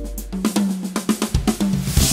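Yamaha Tour Custom drum kit with Meinl Byzance cymbals played over bass guitar and keyboards. About half a second in, the deep low end drops away and a quick run of sharp snare and tom strokes follows, ending on a cymbal crash.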